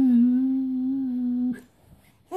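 A single voice holds one steady hummed note for about a second and a half, then stops.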